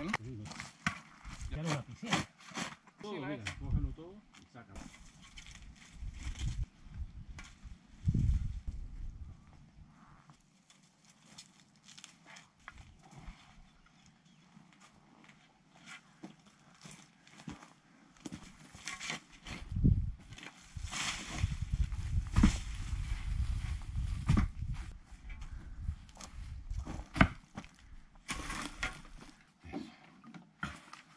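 Digging by hand in stony soil: irregular knocks and scrapes of a pickaxe and loose stones. The work is quieter in the middle, and heavy low thumps and rumbles come in the last third.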